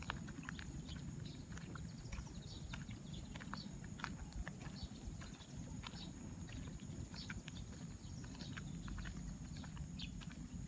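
Footsteps crunching irregularly on a gravel and dirt path, over a low rumble and a steady high whine.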